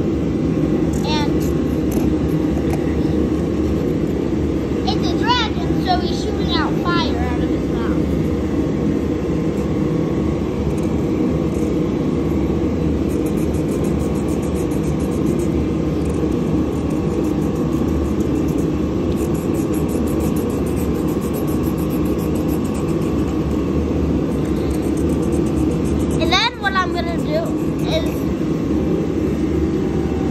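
A steady low rumble runs throughout. Brief high-pitched voices break through about a second in, again around five to seven seconds in, and near the end.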